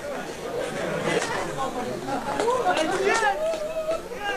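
Many people talking at once, their voices overlapping in excited chatter, with one voice rising high about three seconds in.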